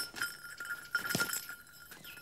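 Tawny eagle beating its wings in irregular flaps as it strains against a 2.5 kg sandbag tied to its legs and fails to lift it. A steady high ringing tone sounds throughout.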